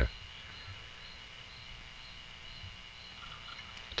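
Faint background sound: a steady thin high tone with a soft high-pitched pulse repeating about two or three times a second over a low hum.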